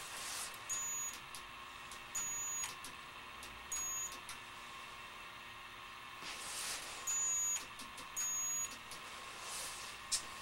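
High-voltage transformer of an ion-lifter power supply whining at its roughly 6.8 kHz drive frequency in five short bursts of about half a second each, over a faint steady electrical hum.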